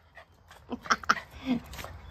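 Poodle puppy making a few short, soft yips and whines in the second half, vocalising as he comes up to his owner.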